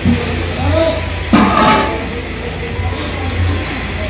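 Indistinct voices and kitchen sounds in a small eatery over a steady low hum, with a brief loud hissing burst about a second and a half in.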